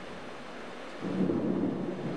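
Steady rain, then about a second in a peal of thunder breaks in suddenly and goes on rumbling.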